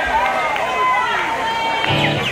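Audience chatter: several voices talking over one another, with no music playing.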